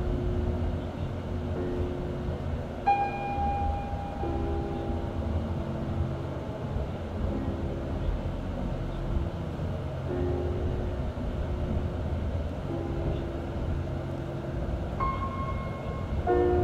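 Slow, calm background music of long held notes that change every second or two, over a low rumble.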